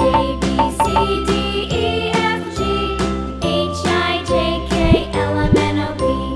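Children's background music with a steady beat.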